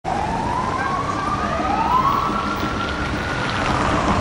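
Police vehicle siren wailing with its pitch climbing slowly, and a second siren sweeping up to join it about a second and a half in, over a rumble of street traffic.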